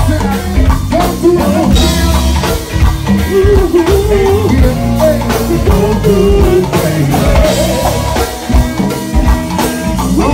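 Live band playing loudly: drum kit and electric guitar with keyboards, and vocalists singing a wavering melody over the beat.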